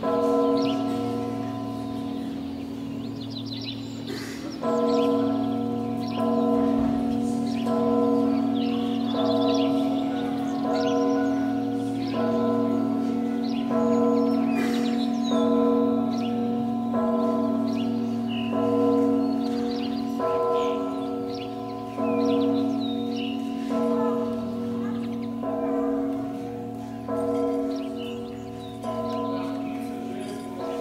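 Church bells ringing: a repeated peal struck about every one and a half seconds, each stroke dying away over the steady hum of a large bell.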